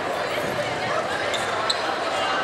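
Indistinct chatter of many voices echoing in a gymnasium, with footsteps on the hardwood court and two short high squeaks near the end.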